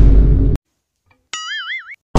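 Comedy sound effects: a loud, deep dramatic hit that cuts off sharply about half a second in. Then, near the end, a short cartoon boing whose pitch wobbles up and down.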